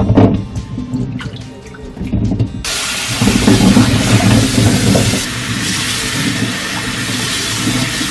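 Green plums sloshed by hand in a steel bowl and colander of water, then a kitchen tap running onto the fruit from about two and a half seconds in, a steady splashing hiss.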